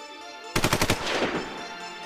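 A short burst of automatic gunfire, about eight rapid shots starting about half a second in, trailing off into an echo.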